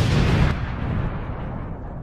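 Explosion sound effect: a sudden blast at the start, then a deep rumble that fades away slowly as the high end dies out.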